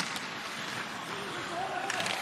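Live ice hockey game sound: steady arena crowd noise with skates and sticks on the ice, and a few faint shouts, one near the end.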